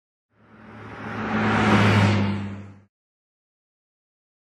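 Title-card whoosh sound effect: a low hum and a rushing noise swell up, peak near the middle, then fade and stop abruptly about three seconds in.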